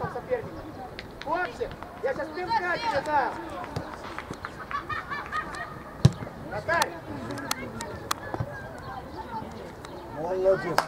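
Indistinct shouting from football players and coaches on the pitch, in several short calls. A football being kicked hard gives one sharp knock about six seconds in.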